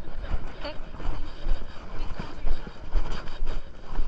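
Handling noise on a body-worn action camera as the handler walks: irregular footsteps, leash and clothing rustling against the camera, over a low rumble.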